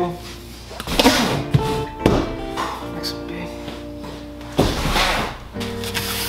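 Cardboard boxes being set down on a table: a few dull thuds with some rustling, about one second in, two seconds in and again near the end, over background music.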